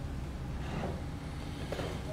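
Steady low hum of the room, with faint rustling of cloth handled on a table about a second in and again near the end.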